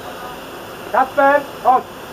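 Raised voice speaking loudly in short bursts about a second in, over a steady outdoor hiss.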